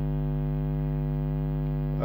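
Steady electrical mains hum: a constant low buzz made of many stacked tones, unchanging in pitch and level.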